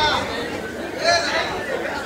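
Several people's voices talking over one another, a background of chatter with no one clear speaker.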